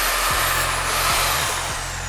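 Cordless reciprocating saw run in the air with no load: a high motor whine over a hiss, its pitch falling steadily in the second half as the motor winds down.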